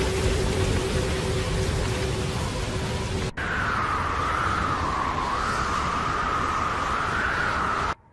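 Sandstorm sound effect: a loud, dense rush of wind-blown sand, with a low held tone under it at first. About three seconds in it drops out for an instant, then resumes with a wavering whistle of wind over the rush.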